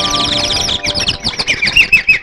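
Birdsong chirping in a film song's instrumental interlude: a fast run of high chirps, turning into a series of lower, repeated downward-sweeping calls in the second half. Held instrumental notes stop just after the start.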